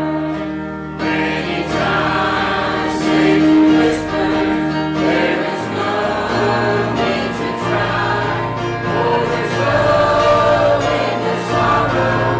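Church choir of men's and women's voices singing a gospel hymn, accompanied by piano and bass guitar, with a brief break between phrases about a second in.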